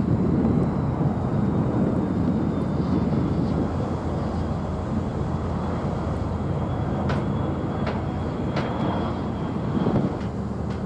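Steady low rumble of a passing cruise ship's diesel engines, with a few faint clicks in the second half.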